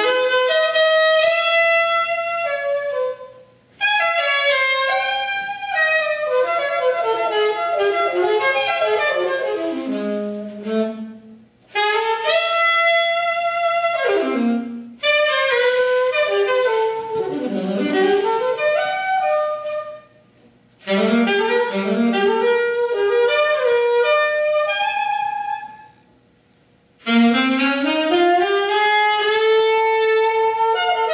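Unaccompanied alto saxophone playing a slow jazz ballad, one melodic line in long phrases broken by short breathing pauses, several phrases sliding down to low notes, the last one settling on a held note.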